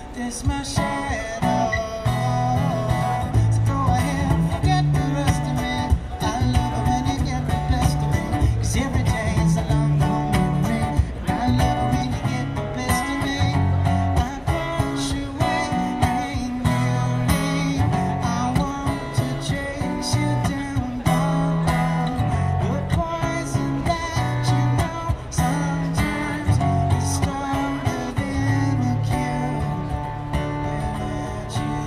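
A man singing live over an acoustic guitar, with a steady beat of short percussive strokes.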